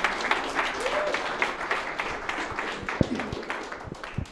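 Small audience applauding, the clapping thinning out and growing quieter over the last second or two.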